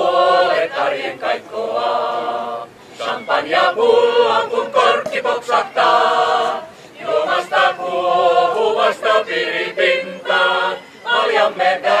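Mixed choir of men's and women's voices singing, in phrases broken by short breaths.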